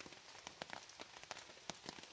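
Faint, irregular raindrops tapping on a rain tarp overhead.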